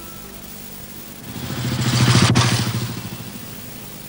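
A motor vehicle engine passing by, swelling to its loudest about two seconds in and fading away within a second or so after.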